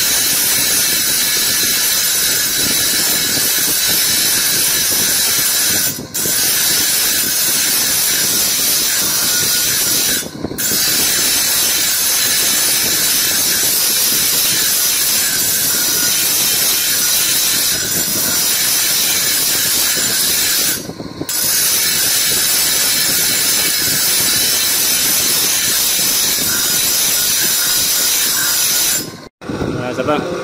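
Fossil giant clam shell ground on a coarse 150-grit grinding disc driven by an electric motor, rounding the pendant's rim: a steady, loud grinding hiss that breaks off briefly three times and drops out just before the end.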